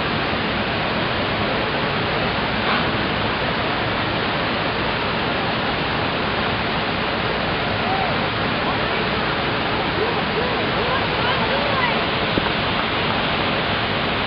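Mirusha waterfall pouring into its plunge pool: a steady, even rush of falling water. Faint short calls rise and fall over it in the second half.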